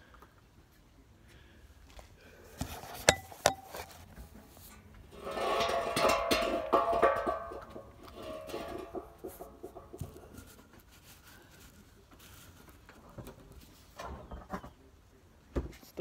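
Plastic screw cap of a mini Fireball whisky bottle being handled and twisted open. Two sharp clicks come about three seconds in, then a few seconds of crackling and creaking as the unopened seal gives way, with smaller clicks later.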